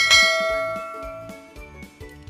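A notification-bell chime sound effect strikes once and rings out, fading over about a second and a half, over light background music.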